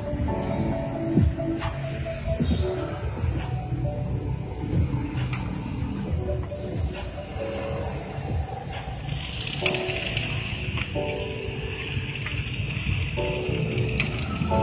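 HP LaserJet 1020 laser printer running a five-page test print: its motor and gear train rumble steadily as sheets feed through, with steady pitched motor tones that start and stop. A higher whine joins about nine seconds in.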